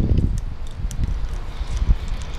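Uneven low rumble of wind buffeting the microphone, with a few faint clicks as the cutting rod is twisted tight in the torch handle's collet.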